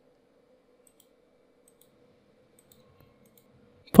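Near silence with a faint steady electrical hum, broken by a few faint computer-mouse clicks. A man's voice comes in at the very end.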